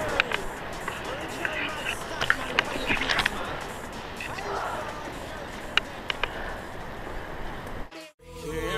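Rustling and handling noise on a body-worn camera during a rope climb in a tree, with scattered sharp clicks and faint voices in the background. The sound cuts out suddenly at the end.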